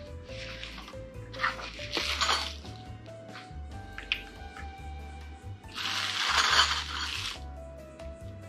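Background music, over the handling of small metal racehorse game pieces being picked up and set on a solid wood game board: light clinks and rustles, with a louder rustle lasting over a second about six seconds in.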